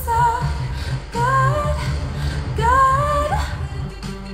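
Female voice singing three short wordless phrases, each sliding up into a held note, over a pop backing track with a steady low bass.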